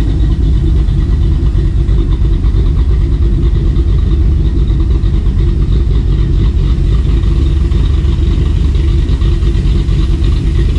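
Dodge Dakota R/T's 5.9L Magnum V8, fitted with aftermarket heads and cam, idling steadily on a freshly revised tune. The engine is not yet up to operating temperature.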